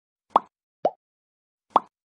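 Three short pop sound effects, the first two about half a second apart and the third about a second later, from an animated subscribe-button overlay popping onto the screen.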